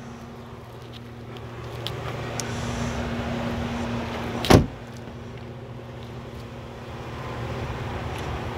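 Background road-traffic noise over a steady low hum, swelling for a few seconds, with a single sharp thump about four and a half seconds in.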